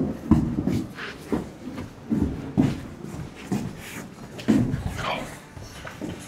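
Irregular footsteps and knocks of work boots on an engineered-wood subfloor, with a few short, indistinct words near the end.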